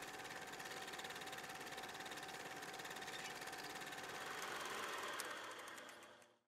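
Film projector running with a rapid, steady mechanical clatter, fading out near the end.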